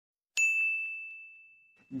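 A single bright bell-like ding sound effect, struck about a third of a second in and ringing out, fading over about a second and a half.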